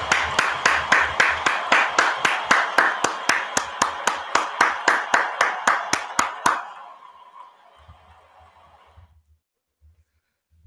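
One person clapping hands close to the microphone, an even run of about four to five claps a second that stops abruptly about six and a half seconds in.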